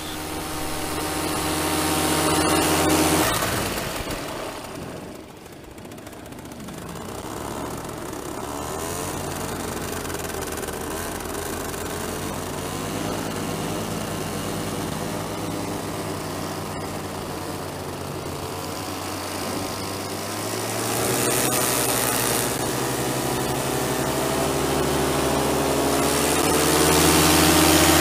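Paramotor engine and propeller running steadily, dipping in level for a couple of seconds about five seconds in, then building up and growing louder toward the end as the paraglider lifts off and climbs.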